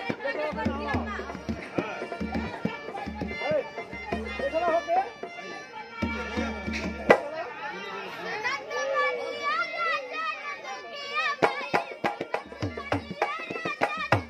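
Women singing a folk song to a harmonium's steady reed chords and a hand-beaten dholak (two-headed barrel drum), the drum's deep bass strokes and sharp slaps keeping the rhythm.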